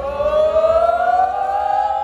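A group of men's voices holding one long unison 'ooh' that rises steadily in pitch and grows louder. It is the build-up chant of a team crouched around a trophy before they jump up to lift it.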